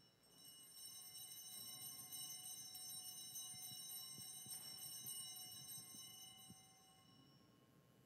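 Altar bells ringing faintly at the elevation of the chalice, marking the consecration. Several steady high bell tones build over the first few seconds and die away near the end.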